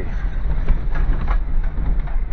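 Inside a 4x4 driving down a gravel track: a steady low engine and tyre rumble with irregular rattles and knocks from the rough surface.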